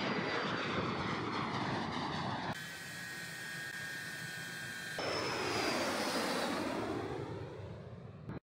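Ilyushin Il-76 transport jets' turbofan engines running as aircraft pass and take off: a steady jet rush with a high whine sliding down in pitch. About two and a half seconds in the sound cuts abruptly to a quieter, steadier engine hum with high whistling tones, then at about five seconds it jumps back to a passing jet with a falling whine that fades near the end.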